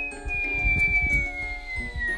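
Cartoon sound effect of a thrown object flying through the air: one long thin whistle falling slowly in pitch, over background music.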